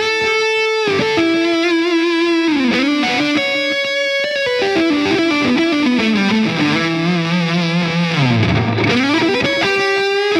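Distorted electric guitar lead played through a Diezel VH Micro head with a little digital delay from an HX Stomp XL: single sustained notes step up and down, then a falling run in the second half ends in a quick dip and return of pitch near the end.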